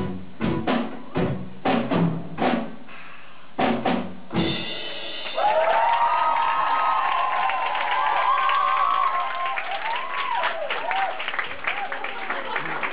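Live rock band's drum kit playing the last spaced-out hits of a song, ending on a full-band final hit about four seconds in. This is followed by a club audience cheering and screaming, then clapping.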